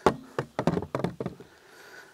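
A black wooden bar stool knocking on a wooden table top as it is set upright and shifted into place: a quick run of hard knocks in the first second and a half, the first the loudest.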